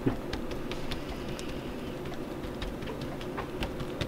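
A gloved hand smearing and working melted white chocolate with crushed Oreo pieces across a lined table, a faint crackly patter of small wet ticks over a steady low hum. The chocolate is kept moving as it cools so that it sets without blooming.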